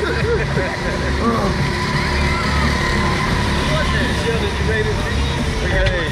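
Wind buffeting the on-board microphone of a swinging slingshot ride capsule: a heavy low rumble that swells and drops, with the riders' wordless laughs and groans over it. A faint steady tone runs underneath.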